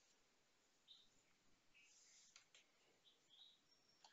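Near silence: room tone with a few faint, short high chirps.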